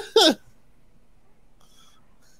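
A man's brief laugh right at the start, cut off short, then quiet room tone.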